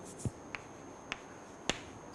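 Chalk tapping on a blackboard while writing: about four short, sharp clicks spaced roughly half a second apart.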